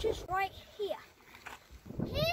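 A boy's voice speaking a few short words, then a quieter stretch of outdoor background.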